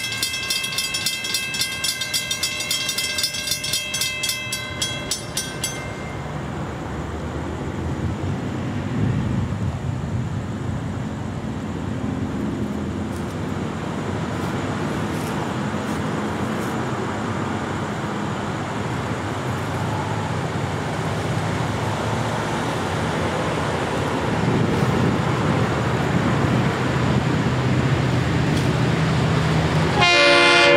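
Grade-crossing bells ringing in a fast steady rhythm, cutting off about six seconds in. Then the low rumble of an approaching freight train led by EMD SD40-2 diesel locomotives grows steadily louder.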